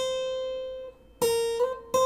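Steel-string acoustic guitar, single notes picked on the high E string, each ringing and fading. The first note dies away before a second is picked; the second slides up a little in pitch, and a third note is picked near the end.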